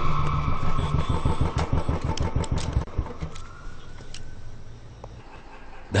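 Motorcycle engine running with a rapid, throbbing beat, loud for the first few seconds and then fading away.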